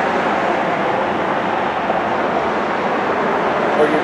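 Steady traffic noise from a city street, an even rumble with no single vehicle standing out.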